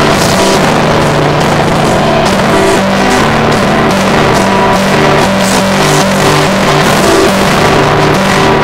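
Acoustic guitar strummed in a steady rock rhythm, loud and harsh, with a dense hiss over the notes.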